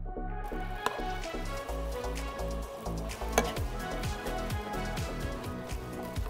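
Background music with a steady beat starts at the outset. Under it, stuffed tomatoes sizzle in hot oil in a frying pan, with a few sharp clinks of utensil on pan, the loudest about three and a half seconds in.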